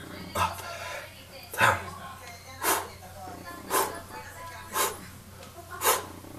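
A man breathing out hard in short, loud puffs, about one a second, six in all, in time with his push-ups.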